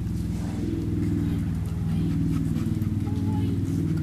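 A motor running with a steady low drone.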